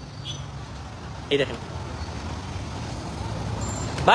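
Steady city road traffic noise, a low rumble of passing vehicles, with a brief snatch of a voice about a second in.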